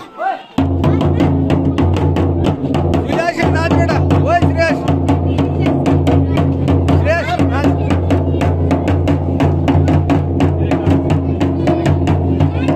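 A drum beaten in a fast, steady rhythm for dance music, starting about half a second in, with voices singing and calling over it.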